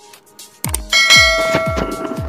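A bright bell-like chime sound effect rings about a second in and holds, over electronic music whose deep kick-drum beat starts just before it.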